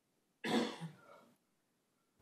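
A person coughing once, sudden and loud, about half a second in, fading out within a second.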